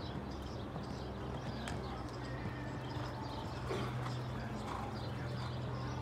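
Hoofbeats of a horse cantering on sand arena footing, over a steady low hum.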